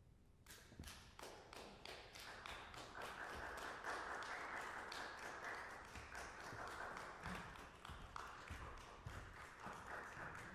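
Small audience applauding, the separate claps easy to pick out, starting about half a second in and growing fuller.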